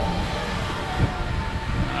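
Wind buffeting an action camera's microphone on a moving amusement-park ride, a steady low rumble with a brief bump about a second in.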